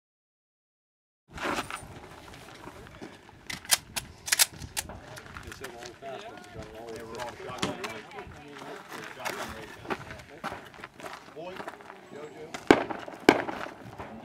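Scattered gunshots at a shooting range, single sharp reports at irregular intervals, with people talking in the background. Begins after about a second of silence.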